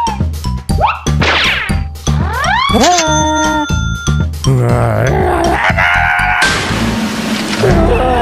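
Cartoon background music with a steady bass line, overlaid with comic sound effects: quick rising whistle-like glides about a second in and again near three seconds, then a stretch of noisier effects a little past the middle.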